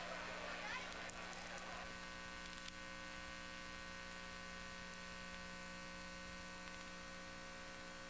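Steady electrical hum with hiss on the recording, after faint background noise dies away in the first two seconds.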